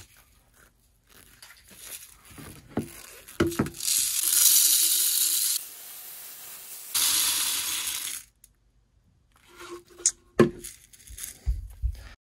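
Copper-coated BBs poured from a plastic bottle into a PVC pipe counterweight: a continuous rushing rattle of shot lasting about four seconds, easing off for a moment in the middle. A few clicks and knocks before and after as the bottle and pipe are handled.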